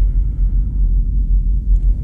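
Steady low rumble inside a spacecraft cabin, with a faint hiss above it.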